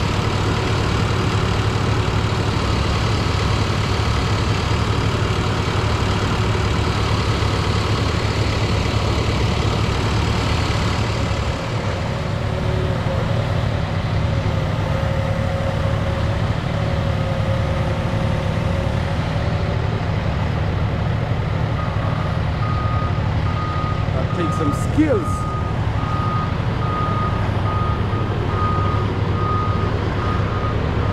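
Telehandler's diesel engine running steadily as it lifts a lumber load off a flatbed trailer. From about two-thirds of the way in, its reversing alarm beeps in an even run, with a single short knock a few seconds after the beeping starts.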